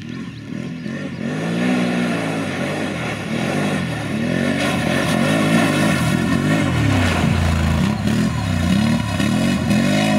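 Can-Am Renegade 1000 ATV's V-twin engine revving up and down again and again as the quad is driven hard. It grows louder over the first few seconds as the quad comes close.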